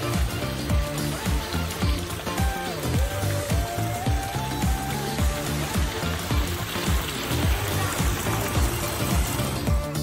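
Upbeat instrumental music with a steady dance beat and a repeating bass line, and a melody line that glides up and down about two to five seconds in.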